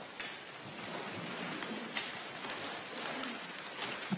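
A congregation stirring in the pews: a steady rustling hiss broken by a few sharp knocks and clicks.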